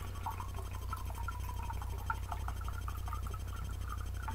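A drink being poured from a bottle into a mug: a faint wavering trickle with small ticks, over a steady low hum.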